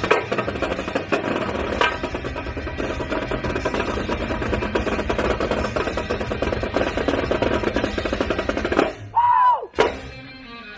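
Marching snare drums played together by several drummers in fast, dense rolls and strokes. Near the end the drumming breaks off, a short falling pitched tone sounds, and one sharp hit follows.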